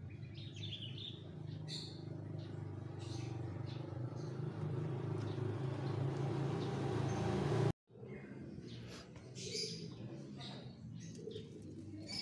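Small birds chirping on and off over a steady low hum that grows louder, then cuts off abruptly about two-thirds of the way through; after the cut the chirps continue over a much fainter hum.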